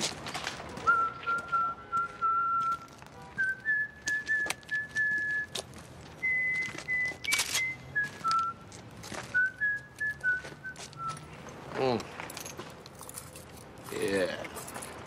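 A man whistling a slow tune in long held notes. The notes step up in pitch over the first half and step back down, ending about eleven seconds in.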